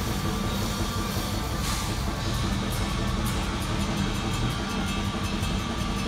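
Heavy metal band playing live, with distorted guitars and drums. In the second half the drums settle into a fast, even beat.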